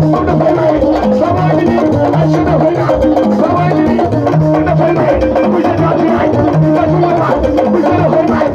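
Loud live dance music with a steady beat: repeating bass notes, percussion and a melody line, with a man singing over a microphone.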